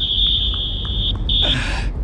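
A referee's whistle blown with one long, steady, high blast, then a short second blast after a brief break, signalling a goal.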